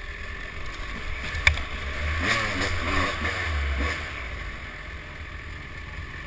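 Dirt bike engine running and revving up and down as the bike rides over a rough trail, heard from a helmet-mounted camera with wind rumble on the microphone. A sharp knock about a second and a half in; the revving is strongest in the middle and eases off after about four seconds.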